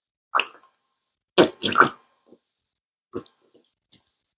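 Ranch dressing squirting from a squeezed plastic squeeze bottle: a series of short wet splutters as dressing and air spurt out. There is one splutter, then a quick run of three, then two more near the end.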